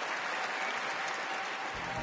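Audience applauding steadily. Background music comes in near the end.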